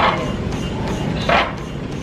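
A person's short, effortful vocal bursts, two of them about a second and a half apart, straining through leg-press reps near muscle failure.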